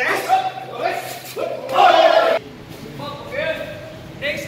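People talking in a large, echoing gym hall. The sound drops abruptly about two and a half seconds in, and a quieter voice carries on.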